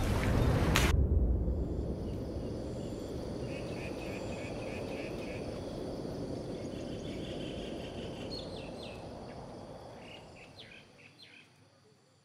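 A burst of pool splashing cuts off about a second in. It gives way to outdoor ambience: a steady hiss with bird and insect chirps, some in quick runs, fading out near the end.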